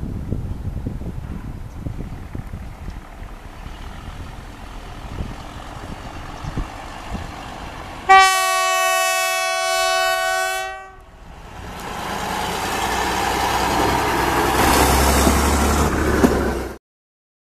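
WM15 track maintenance vehicle sounds its horn once, a single steady blast about two and a half seconds long, about eight seconds in. Before the horn, its engine runs low with scattered clicks as it moves along the track. After the horn, the running noise builds again and grows louder toward the end.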